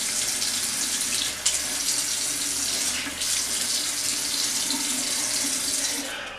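Water running steadily from a bathroom tap and splashing as a section of hair is wetted under it, fading out at the very end.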